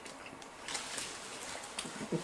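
Faint mouth sounds of chewing a bite of burger: a few soft, wet clicks over a low hiss.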